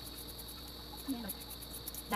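A steady high-pitched trill, like a cricket chirping continuously, with a faint short falling sound about a second in.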